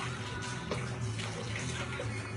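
Lemonade pouring from a bottle in a steady stream, with background music.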